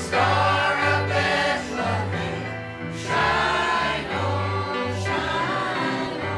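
Mixed church choir of men's and women's voices singing together, over steady sustained low accompaniment notes.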